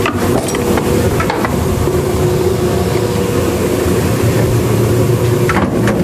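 Emery Thompson 12NW 12-quart batch ice cream freezer running loudly and steadily with a low hum, its dasher turning while a batch is drawn off into a container. A few light knocks sound near the start and again near the end.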